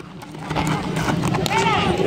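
Players and spectators shouting across a dirt baseball field as a ground ball is played out, with the shouts rising near the end. Underneath runs a low rumble with scattered thuds close to the microphone.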